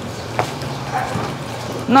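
A large bonsai pot scraping and grinding across a tiled floor as two men shift it, with a sharp knock about half a second in.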